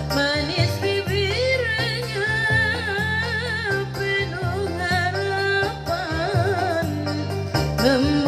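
A woman singing a North Maluku qasida song into a microphone, her melody wavering and ornamented, over a steady instrumental backing with a regular beat.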